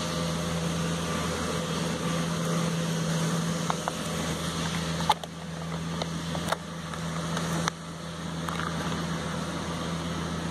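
Steady low motor hum at an even pitch, with a few short clicks in the second half.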